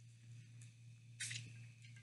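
Faint wet squishing of a whole mango being bitten and sucked by mouth, with a short louder hiss a little over a second in.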